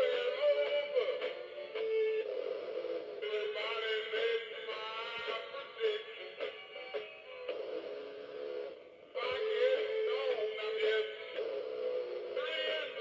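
Animated singing figure playing a song with male singing through its small built-in speaker, running on low batteries; the song breaks off briefly about nine seconds in.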